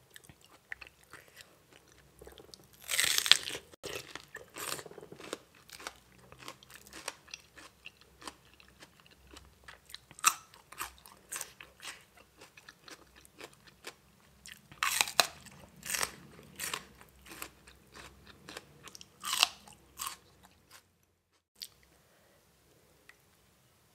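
Crunchy bites and chewing of raw vegetables, starting with a small wild bitter gourd, in irregular bursts. The loudest crunches come about three seconds in and again around fifteen seconds in, with quieter chewing between, and the sound cuts off just before the end.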